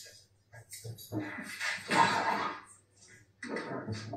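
Muffled, indistinct voices in short broken bursts, loudest about two seconds in, over a steady low electrical hum.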